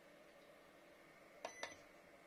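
Two quick electronic beeps from a small electric dehumidifier's control button, about a fifth of a second apart and roughly a second and a half in, over a faint steady hum.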